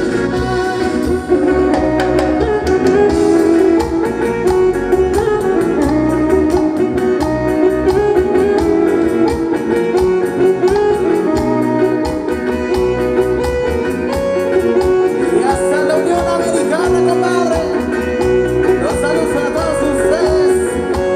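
Live band dance music played loud through the PA, a steady quick beat under a melody line, with some singing in the later seconds.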